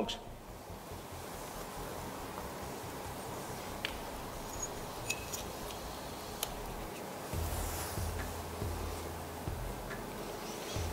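Quiet workshop room tone with a few faint, sharp clicks from a jump starter's clamps and cables being handled. A low hum comes in about seven seconds in.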